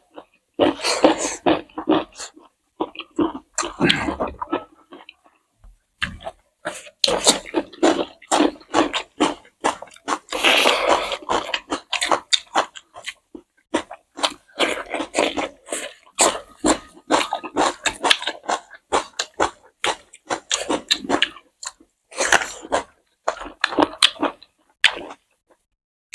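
Close-miked eating: wet chewing, lip smacking and short mouth clicks as two people chew rice and pork curry, in quick irregular runs with a brief pause about five seconds in.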